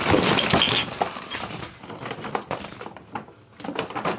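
A paper gift bag tipped out onto a bed: boxes and packaged items tumble out and knock together, loudest in the first second, followed by scattered knocks and the rustle of paper packaging as the items are handled.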